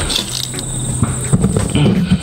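Insects chirring in a steady, high, even drone, with low muffled sounds beneath it.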